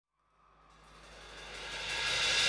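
Live arena concert sound fading in from silence: a wash of noise with a faint low hum that grows steadily louder.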